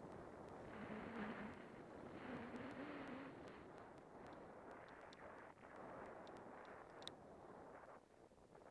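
Faint hiss of a snowboard sliding over snow, swelling and fading as the rider turns, with a few small clicks near the end.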